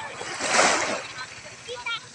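Small sea wave washing up onto a sandy beach: one rush of water that swells and fades about half a second in.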